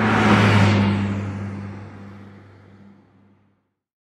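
An engine-like drone: a steady low hum with a rush of noise that swells about half a second in, then fades away to nothing by three and a half seconds.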